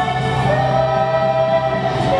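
A woman singing long held notes into a microphone over a band with electric guitar in a live pop performance, her melody stepping down in pitch about half a second in.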